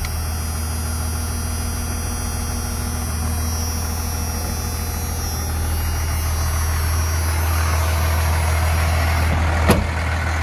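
1993 Dodge Ram 250's 5.9-litre Cummins 12-valve inline-six diesel idling steadily, just after starting. A single sharp knock comes near the end.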